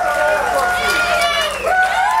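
Club audience cheering and shouting at the end of a rock show, with many voices whooping over one another.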